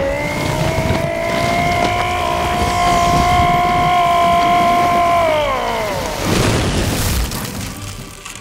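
Cartoon fight-scene sound effects and music: a loud, long steady pitched tone that slides down in pitch after about five seconds, over a low rumble, followed by a crashing impact about six seconds in.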